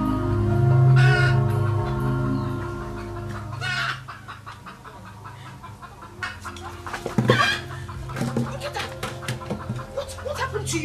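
Soft background music of long held tones that fades out about four seconds in, over chickens clucking, with a louder call a little after seven seconds.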